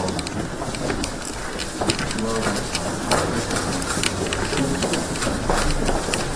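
Indistinct talk from several people amid the bustle of a group walking in a corridor, with many sharp clicks and footsteps through it.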